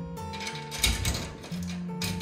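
Background music with steady held notes, and a brief scraping handling noise about a second in.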